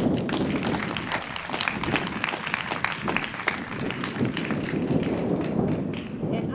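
Audience applauding: many hands clapping together, dense and irregular.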